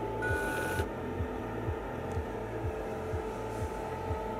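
Small electric motor of an Arduino autopilot bench rig, geared to the rudder-position sensor, running with a steady whine and a low knock repeating about twice a second.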